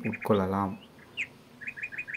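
A small bird chirping in the background: one short falling chirp about a second in, then a quick run of four chirps near the end.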